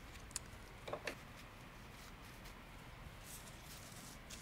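Quiet room tone with a few faint, short clicks and soft rustles as hands press rose stems and hydrangea florets into the arrangement.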